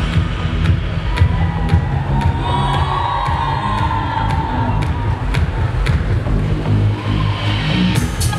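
Loud electronic pop music at a live concert with a heavy bass and a steady beat, and a crowd cheering that swells around the middle.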